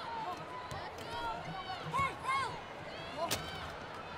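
Court sounds of a wheelchair basketball game: short high squeaks on the hardwood floor and a single sharp knock a little past three seconds in.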